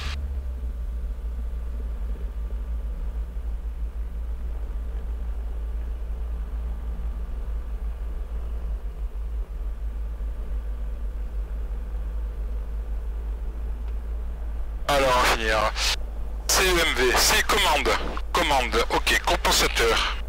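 Low steady drone of a Diamond DA40's piston engine idling, heard through the cockpit intercom recording, while the aircraft waits at the holding point. About fifteen seconds in, a voice comes in and talks on to the end.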